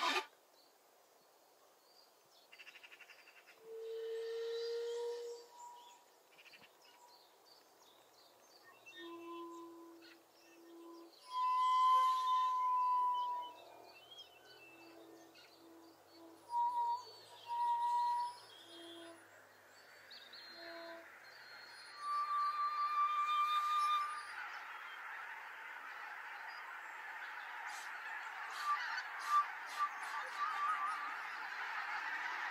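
Two shakuhachi bamboo flutes improvising in sparse notes, some held and some short, with pauses between. From about two-thirds of the way in, the honking of a large flock of geese builds up behind the flutes and grows louder to the end.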